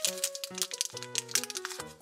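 Background music with held notes changing about every half second, over light crinkling of a small plastic wrapper being peeled open by hand.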